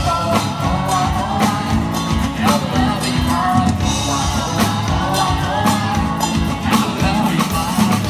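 Live band playing upbeat dance music, with a drum kit keeping a steady beat, hand drums and a singing voice over it.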